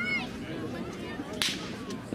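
A single sharp crack about one and a half seconds in, over faint background voices.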